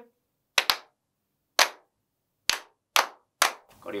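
Hand claps beating out a body-percussion rhythm: six sharp claps, a quick pair about half a second in, a single clap, then three evenly spaced claps near the end.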